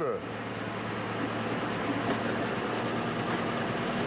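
Car engine running steadily at about idle in fourth gear, turning the driveshaft, differential and rear wheels raised off the ground: an even, low hum.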